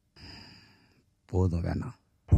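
A man exhales in a faint, breathy sigh that fades away, then speaks a short word near the end.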